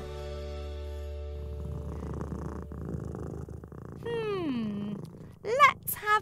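Domestic cat sound effect in a cartoon: a steady purr, then one long meow that falls in pitch about four seconds in.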